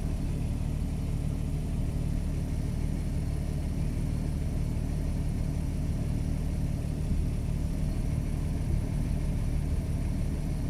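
Car engine idling steadily: an even, low hum with no change in speed.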